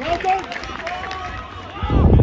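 Footballers shouting and calling to each other on the pitch, several drawn-out voices with no clear words. A loud low rumble of noise comes in near the end.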